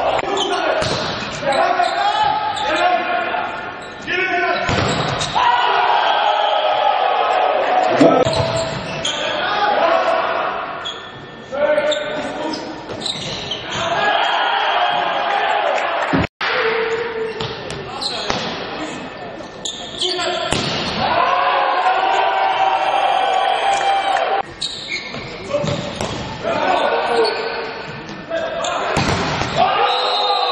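Indoor volleyball match sound: voices calling out, with ball hits from the rallies. There is a hard cut about sixteen seconds in.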